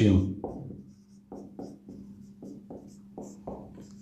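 Marker pen writing on a whiteboard: a run of short, separate strokes and squeaks as words are written, over a steady low electrical hum.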